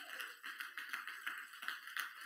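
Faint scattered clapping from a church congregation, a soft patter of many small claps.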